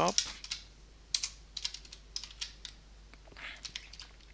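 Typing on a computer keyboard: scattered keystrokes in small groups with short pauses between them.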